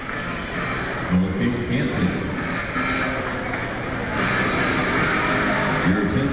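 Arena crowd noise: a steady din of many voices from the stands, swelling about four seconds in.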